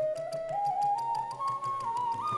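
Carnatic classical accompaniment for a Bharatanatyam varnam: a bamboo flute plays a single melodic line that climbs step by step, over low drum strokes and a steady light ticking beat.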